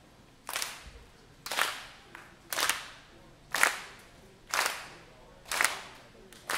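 Audience clapping together in time, a steady beat of about one clap per second, six claps in all, keeping the tempo for the band's next song.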